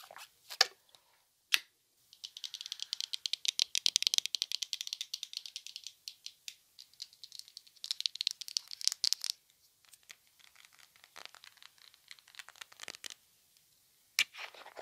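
Fast, dense rattling of small hard objects in two long spells, with sparser clicks in between and after. Just before it come a short sip through a water bottle's straw and a sharp click.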